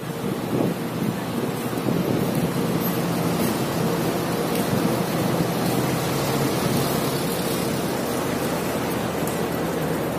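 Steady street noise of traffic: a dense, even hiss with a faint steady hum beneath it.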